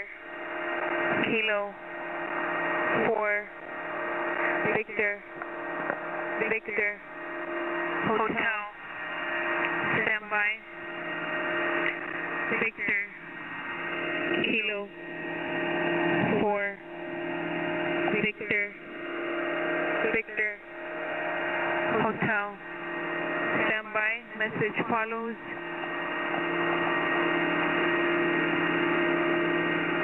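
Shortwave radio static from a single-sideband HF receiver. The hiss dips sharply and swells back about every two seconds, then runs steady for the last few seconds.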